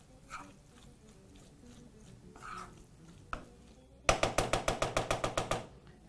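Faint scraping of a wooden spoon stirring rice in a pot, then, about four seconds in, a loud, rapid, evenly spaced ticking of about nine strokes a second that lasts about two seconds.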